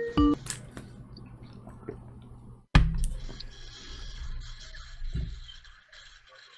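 A short electronic jingle of pitched notes cuts off about half a second in, leaving the low hum and faint hiss of an open call line, with one sharp click near three seconds in as the line connects.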